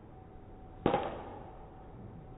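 A single sharp crack of a golf club striking a ball, a little under a second in, followed by a short ringing decay.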